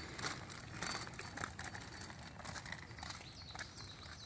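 Faint footsteps and the small wheels of a rollator walker rolling on an asphalt path, with light clicks and knocks throughout. A few faint high chirps come in near the end.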